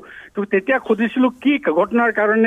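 A man talking over a phone line, the sound narrow and thin; it is speech only.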